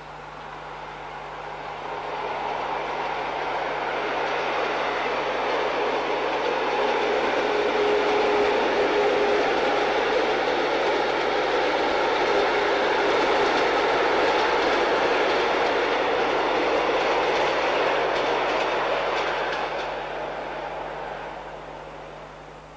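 Rhaetian Railway electric locomotive and passenger coaches passing on metre-gauge track, the running noise of wheels on rails growing louder over the first few seconds, holding, then fading away near the end.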